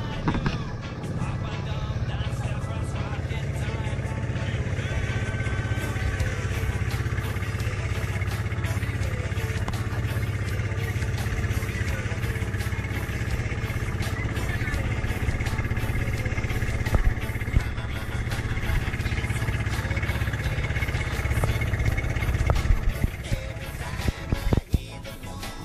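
Bangka outrigger boat's engine running steadily while under way.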